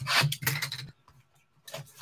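Cardboard trading-card box rubbing and scraping against the box beneath and against the hands as it is slid off a stack and its lid flap worked open: a few quick scuffs in the first second, then quiet, then a couple of faint scuffs near the end.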